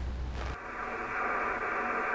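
Amateur shortwave radio transceiver, tuned in the 20-metre band, giving out a steady hiss of static through its speaker, starting about half a second in after a low outdoor rumble.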